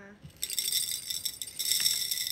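Gravel poured from a small cup into an empty glass mason jar: a dense rattle of pebbles striking the glass, starting about half a second in.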